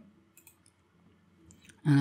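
A few faint computer mouse clicks in a quiet room, a couple about half a second in and more near the end, just before speech resumes.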